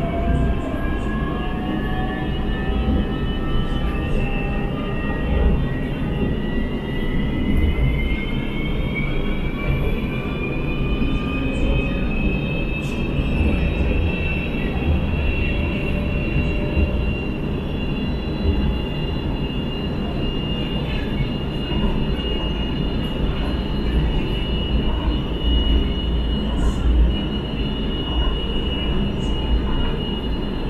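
Inside a CSR Zhuzhou light-rail train under way. The traction motors' whine rises in pitch for about the first ten seconds as the train accelerates, then holds steady at running speed, over a continuous low rumble of wheels on the track.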